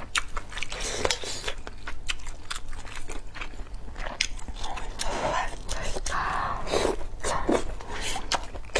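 Close-miked eating sounds: a person biting and chewing pieces of spicy hot-pot food, with many sharp wet mouth clicks and crunches, and a few louder, longer mouth sounds between about five and seven seconds in.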